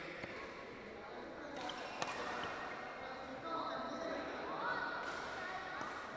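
Badminton rally in a large hall: sharp racket strikes on the shuttlecock, the loudest about two seconds in, with sneakers squeaking on the court floor in the second half.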